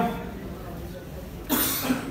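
A single short cough, about one and a half seconds in.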